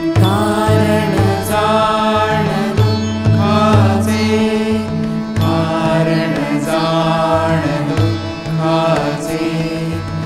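Indian devotional music in an instrumental passage: a sitar melody with phrases that slide downward, over a hand-drum rhythm and a steady drone.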